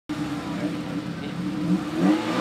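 Car engine idling with a steady, slightly wavering low note, held at the start line before setting off on a rally test.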